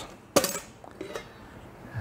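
Metal lid of a stainless steel flan mold being unclipped and lifted off: one sharp metallic clink just after the start, then a few faint clicks about a second in.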